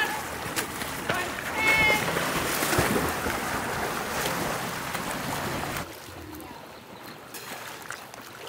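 Swimmer's freestyle stroke splashing in a pool, with short voices in the background. About six seconds in, the splashing drops away to a quieter background.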